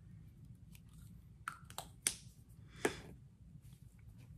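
Faint handling of makeup products: a few light clicks and short scrapes in the middle, the last two the loudest, as a bullet lipstick is put away and the next lip product picked up.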